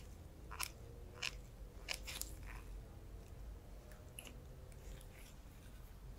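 Faint, sharp snips of steel cuticle nippers (Mundial 722) cutting away thick toenail cuticle, several in quick succession in the first couple of seconds, then a few more spaced out later.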